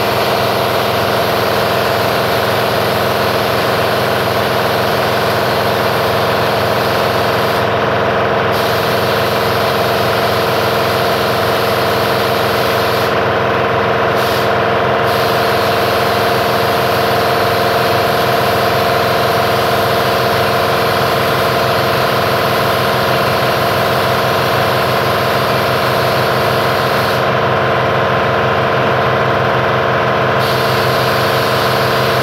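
Air compressor running steadily with a constant mechanical hum, under the hiss of a paint spray gun. The hiss drops out briefly a few times, at about 8 seconds, around 13 to 15 seconds and near the end.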